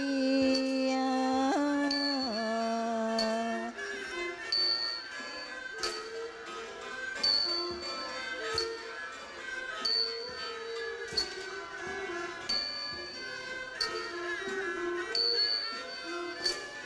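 Thai classical ensemble music, with bowed fiddles carrying the melody and small hand cymbals struck at a steady beat about every second and a half.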